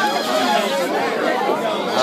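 Crowd chatter: several voices talking over one another at a fairly loud level, with no music playing.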